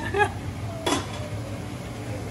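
A single short clink of kitchenware about a second in, over a steady low hum, with a brief voice fragment at the start.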